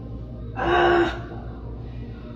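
A person's sharp gasp, about half a second long, over a steady low background hum.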